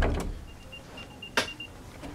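Apple AirTag playing its find-me alert: a faint run of short, high chirps at one pitch. A single sharp knock cuts across it about one and a half seconds in.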